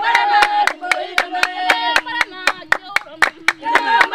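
Himba women singing together while clapping their hands in a steady rhythm, about four claps a second. The singing thins out in the middle, leaving mostly the clapping, and swells again near the end.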